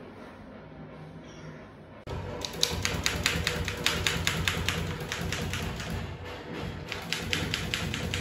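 Typewriter keys striking in a fast, even run of about five clicks a second, starting suddenly about two seconds in.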